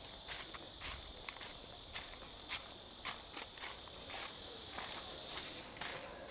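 Irregular footsteps and taps over a steady, high-pitched insect buzz.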